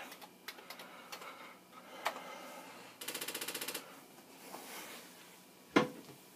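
Keys clicking on a Commodore 64 keyboard as the RUN command is typed and entered, followed a few seconds in by a short, rapid mechanical rattle of about twenty evenly spaced ticks lasting under a second. A single sharp knock comes near the end.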